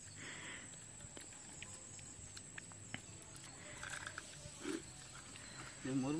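Quiet open-air background with a thin steady high whine and a few faint clicks. Near the end comes a man's low, gliding 'mmm' as he tastes a freshly fried sweet bonda.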